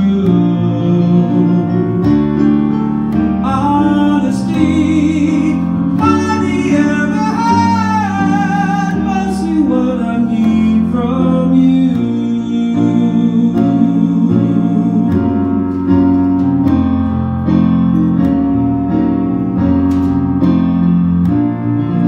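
A man singing a slow piano ballad to his own digital stage piano accompaniment, with long held vocal lines most prominent in the first half, the piano chords carrying on underneath throughout.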